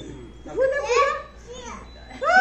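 Voices only: one high voice calls out briefly about half a second in, with quieter talk around it.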